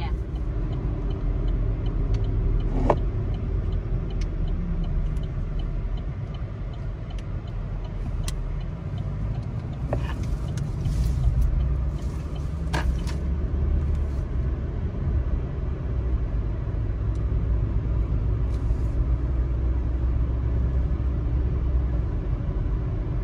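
Road and engine noise inside a moving car: a steady low rumble, broken by a few sharp knocks about three, ten and thirteen seconds in.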